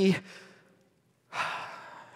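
A man's long, breathy sigh, about a second and a half in after a short silence: an exhaled breath of relief, acted out.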